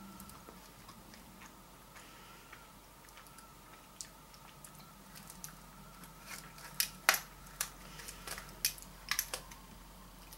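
Thin plastic chocolate tray crackling and clicking as it is handled and slid across the table. The run of sharp, irregular clicks begins about six seconds in, after a faint steady room background.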